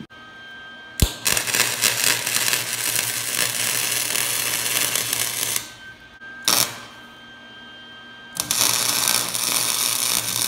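Arc welding on a cracked steel exhaust manifold: the welding arc crackles steadily in three runs, the first starting about a second in and lasting some four and a half seconds, a short burst near the middle, and a third from about eight and a half seconds on. This is a weld bead being laid over a stress crack and the hole drilled to stop it.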